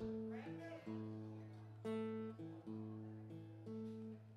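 Steel-string acoustic guitar being tuned: single strings plucked one at a time, about one a second, each left ringing, over a low string that keeps sounding underneath.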